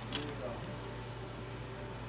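Hot oil bubbling in a pot on the stove, a steady hiss over a low steady hum. A couple of light clicks come at the very start, and a faint voice follows just after.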